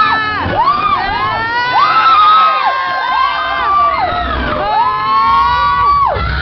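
A group of riders screaming on a drop ride: many long, overlapping high screams, each rising, holding for about a second, then falling away, one after another.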